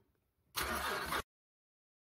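A short noisy burst from a GM 3.6L V6 being cranked over by its starter. It starts about half a second in and cuts off abruptly after under a second. The engine's intake cam phaser is busted and not locking.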